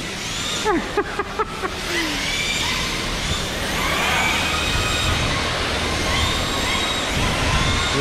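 Several RC drift cars sliding on a smooth concrete floor, making overlapping high squeals that rise, hold and fall as each car drifts through the turns, a sound called screaming.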